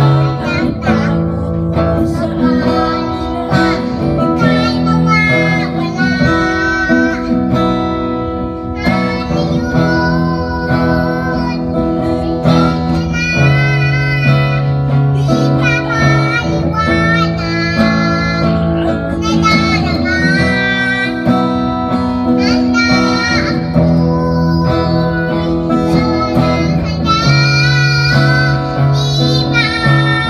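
A young girl singing a ballad into a microphone, accompanied by a man playing an acoustic guitar.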